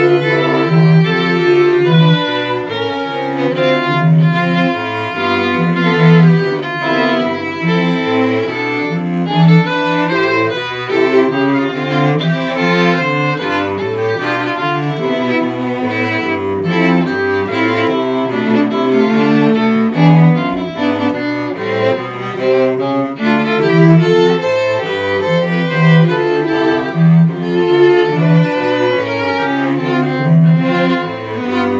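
A string quartet of violins and cello playing a piece without pause, the cello repeating a low figure every couple of seconds beneath the upper strings' melody.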